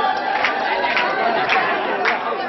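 Crowd chatter: many people talking at once in a packed room, with a regular beat about twice a second over the voices.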